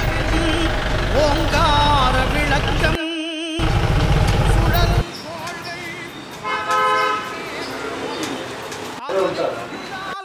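Busy street noise: traffic rumble and people's voices for the first five seconds, then quieter, with a vehicle horn held for about a second in the middle.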